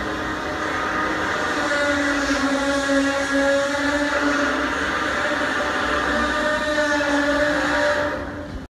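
Steady mechanical drone of workshop machinery, a hum with a couple of held tones over a noisy bed that grows a little louder about two seconds in.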